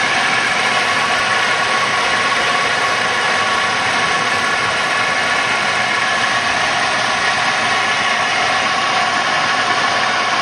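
A 1991 Chevy Corsica's engine idling steadily, heard close up from the open engine bay.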